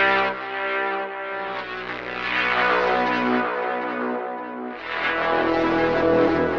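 u-he Zebra HZ software synthesizer playing the Frost preset 'SY Victimized', a gated, mangled poly synth: sustained synth chords, moving to a new chord about a second in and again near five seconds.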